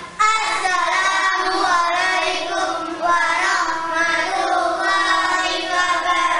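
Children singing a continuous melody, the sung line running unbroken and at an even loudness.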